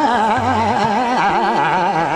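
Hindustani khayal singing in Raag Khat, set in medium-tempo jhaptaal: a male voice sweeps up and down about four times a second in a fast oscillating passage, over harmonium and tabla.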